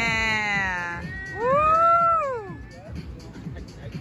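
Music with a steady beat. Over it, a long held vocal note gives way to a loud wail that rises and then falls, lasting about a second and a half.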